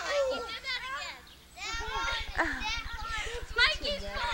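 Excited, high-pitched children's voices calling out during rough-and-tumble play. A steady low buzz comes in about halfway through.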